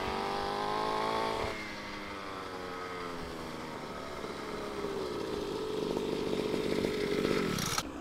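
Small engine of a child's mini dirt bike running at speed as it comes closer. Its pitch climbs over the first second or so, then drops and holds a steady tone that grows a little louder, and the sound cuts off abruptly near the end.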